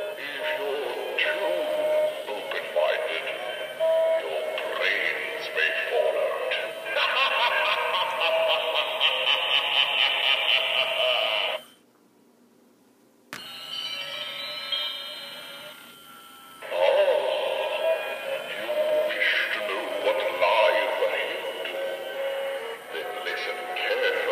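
An animatronic genie head plays its recorded, electronically altered voice over music. The sound stops for about a second and a half near the middle, then comes back quieter before rising again.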